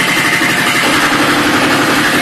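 Loud, distorted live-concert sound from the PA and the crowd, overloading the phone's microphone into a steady, gritty wall of noise that cuts in suddenly just before the start.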